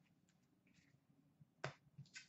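Near silence with faint handling of trading cards on a glass counter, and one sharp tap about one and a half seconds in.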